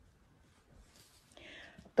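Near silence in a pause between spoken sentences, then a faint breath drawn in during the last half second, just before the woman speaks again.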